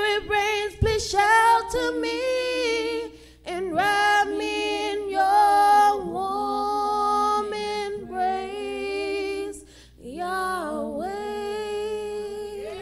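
Two women singing a gospel song into microphones without instrumental backing, on long, wavering held notes with brief breaks for breath about three seconds in and near ten seconds.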